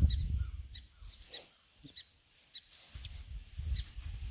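Small birds chirping: short, high chirps repeating every half second or so, over a low rumble that fades out about a second in and returns about three seconds in.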